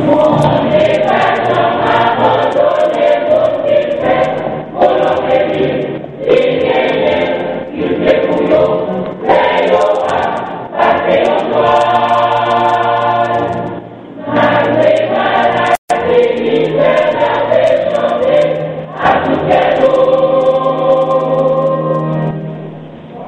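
A choir singing a Christian gospel song, with steady low accompanying notes beneath the voices. The sound cuts out for an instant about three-quarters of the way through.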